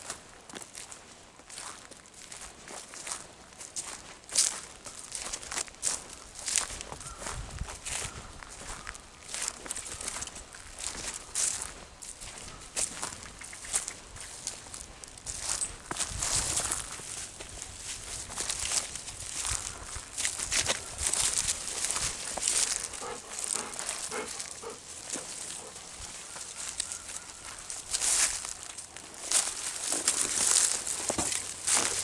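Footsteps on dry leaf litter and twigs along a forest path: an uneven run of crackles and rustles.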